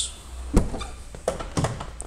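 A sharp thunk about half a second in, then a few softer clicks and knocks: the Alfa Romeo Brera's door being unlatched and swung open.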